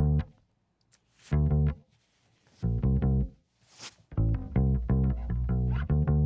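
Electric bass guitar track played back on its own, a phrase of separate low notes with silent gaps between them and a quicker run of notes near the end, through an LA-2A optical compressor plugin that steadies it without sounding more compressed.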